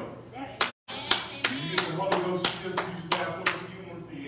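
Hands clapping in a steady rhythm, about three claps a second for some three seconds, over a man's voice. The sound cuts out completely for a moment just before the clapping starts.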